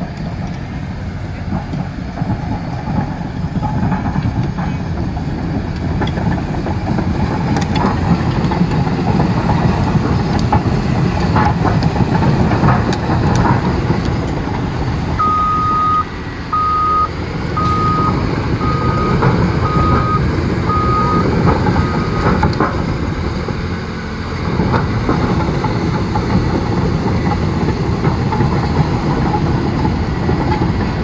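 Caterpillar D6T crawler dozer's diesel engine running loudly, with its steel tracks clanking as it moves. About halfway through, its backup alarm beeps about eight times in an even row, the first beep longer, as the dozer reverses.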